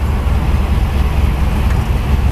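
Blown 406 small-block Chevy V8 (6-71 blower, side-exit exhaust) running steadily while the car drives along, heard from inside the cabin as a loud, even low drone.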